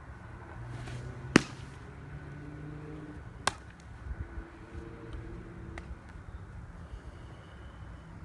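A pitched baseball hits the target with one sharp, loud pop a little over a second in, followed about two seconds later by a second, weaker smack and a few faint clicks.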